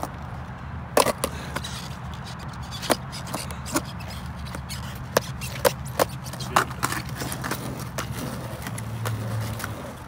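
Skateboard with a bicycle inner tube strapped around the deck being handled and stood on, giving scattered sharp clicks and knocks on asphalt over a steady low rumble.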